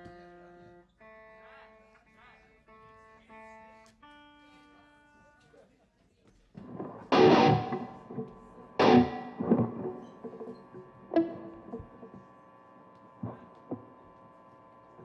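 Electric guitars being tuned and checked through amplifiers: quiet single notes for the first few seconds, then a handful of loud strummed chords that ring out.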